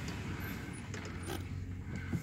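Pickup truck crawling slowly over a rough dirt road, heard from inside the cab: a steady low engine hum with a few light creaks and clicks from the cab.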